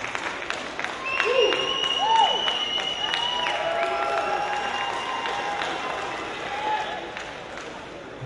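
Audience applauding and cheering for the overall winner, with whooping shouts and a long high whistle about a second in. The applause fades toward the end.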